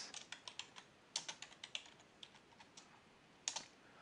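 Typing on a computer keyboard: short runs of keystrokes with pauses between them, and one firmer keystroke near the end.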